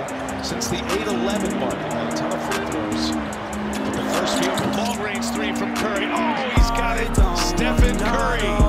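A hip-hop beat with sustained low notes plays over basketball game sound, with short high squeaks like sneakers on a hardwood court. About six and a half seconds in, a deep bass drum comes in, hitting about every two thirds of a second.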